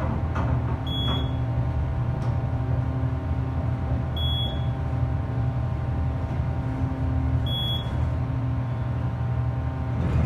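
US Elevator hydraulic elevator travelling up, heard inside the cab: a steady low hum from the car's ride and its pump motor running. Three short high beeps sound about three seconds apart.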